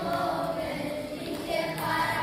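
A group of children singing a folk song together, unaccompanied, as they dance; one phrase ends and the next begins near the end.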